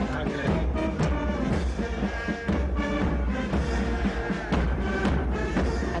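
Military brass band playing a march at a parade.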